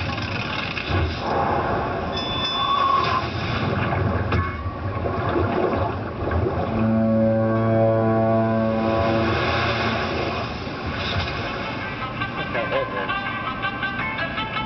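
Soundtrack of an animated cartoon: music and sound effects, with one long, steady low tone held for about three seconds in the middle.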